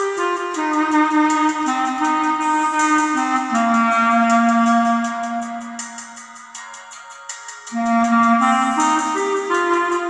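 Solo clarinet playing a slow, lyrical melody: a phrase stepping downward to a long held low note that fades away about seven seconds in, then a new phrase rising from about eight seconds. Underneath is an accompaniment with a steady beat.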